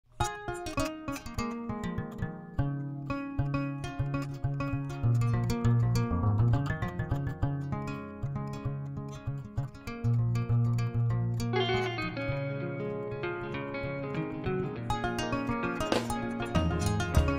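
Background music of quick plucked-string notes over a low bass line, starting just after a moment of silence.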